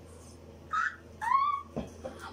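A girl's short breathy gasp, then a brief high-pitched squeal of delight about a second later, at being given a present she wanted.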